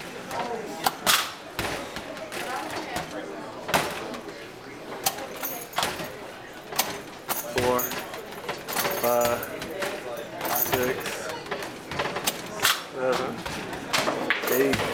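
Small basketballs hitting the backboard and rim of an arcade basketball hoop machine, a sharp knock every second or two as shot after shot is thrown.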